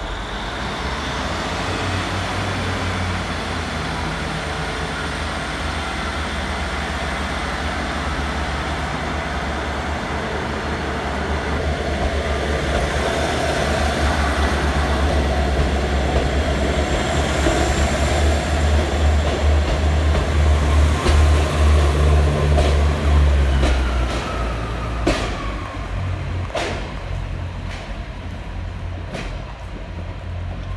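GWR Class 150 diesel multiple unit's underfloor diesel engines pulling the train away: a deep rumble that grows louder for about twenty seconds, then eases. A few sharp clicks follow near the end.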